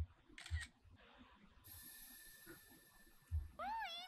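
Faint anime soundtrack: a camera shutter click about half a second in, a thin steady high hiss for about two seconds, then a girl's high-pitched excited voice near the end.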